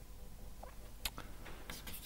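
Chalk on a blackboard: a single tap about a second in, then quick taps and scratches near the end as writing begins.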